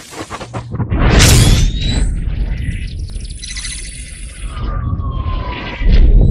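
Intro logo sting of sound effects: a rising whoosh into a deep boom about a second in, then a held low rumble with high electronic tones and a slowly falling tone, and a second deep boom near the end.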